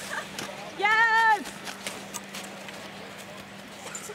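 A spectator's single high-pitched cheering yell, about half a second long, about a second in, over a few faint scattered clicks.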